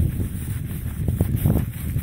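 Wind buffeting the microphone, a steady low rumble, with a few soft footsteps in dry grass about a second in.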